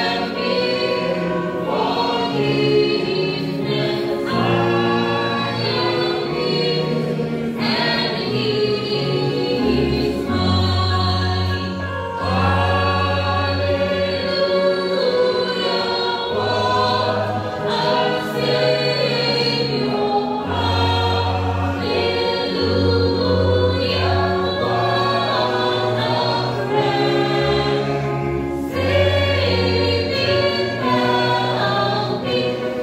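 A church congregation singing a hymn together, many voices in slow held notes that change every second or two without a break.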